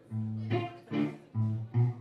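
Electric guitar picking a handful of single low notes, one about every half second, noodling through the amp between songs rather than playing the song itself.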